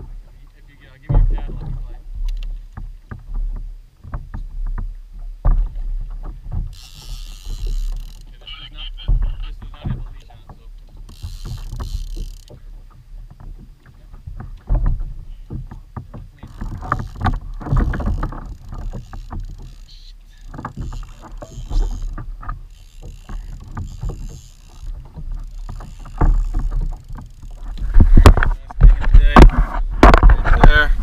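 Water slapping against a kayak hull as it rocks on the sea, with a steady low rumble of wind on the microphone and irregular knocks of gear against the hull, loudest near the end.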